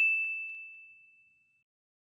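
A single bright ding, the notification-bell chime of a subscribe-button animation, ringing out and fading away over about a second and a half.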